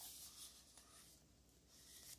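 Near silence with a faint rustle of a paper picture book being handled, dying away after about half a second.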